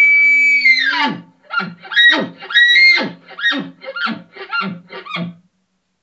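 A human caller imitating a bull elk's challenge bugle: a high whistle held, then falling off about a second in, followed by a string of about ten quick grunting chuckles that stop a little after five seconds.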